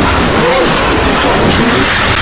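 A loud, dense rush of noise from an edited sound effect, with wavering voice-like tones underneath it.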